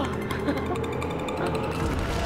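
Game-show score-column countdown sound effect: a rapid, pulsing electronic tone runs as the score drops from 100 and cuts off near the end as the column stops on the answer's score.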